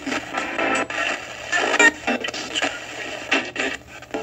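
A spirit-box radio sweep: a radio jumps rapidly through stations, giving chopped snatches of broadcast voices and music a fraction of a second each. The operator listens to these snatches as answers from spirits.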